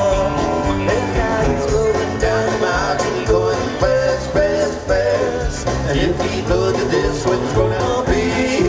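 Live country-rock band playing loud over a steady beat: electric guitars, bass and drums, with a melodic lead line on top.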